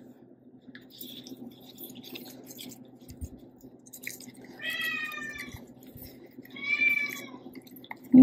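A cat meowing twice: a call of about a second, then a shorter one. Under the calls are faint rustles and clicks of plant leaves being handled and a low steady hum.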